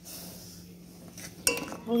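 A steel spoon clinks once against a steel pan of milk and vermicelli, with a short ring, about one and a half seconds in.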